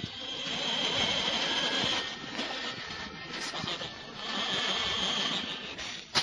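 Steady hiss and rumble of surface noise from an old shellac 78 rpm record being played, swelling and fading about every two seconds.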